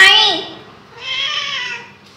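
A domestic cat meowing twice: a loud meow at the very start, then a longer, fainter one about a second in.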